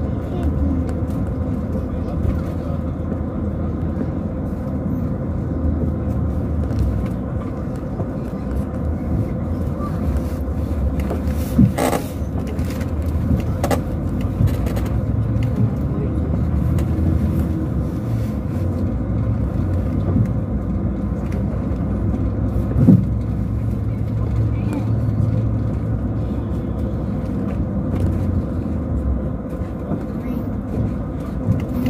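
Interior of a coach bus driving on an unpaved dirt road: a steady low engine and road rumble. Two sharp knocks stand out, one about a third of the way through and one about three quarters of the way through.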